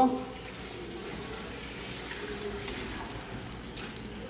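Eggs with loroco frying in a pan on a gas burner, a low, steady sizzle.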